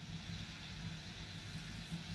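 Faint steady low hum of a TV studio's room tone, with no other sound standing out.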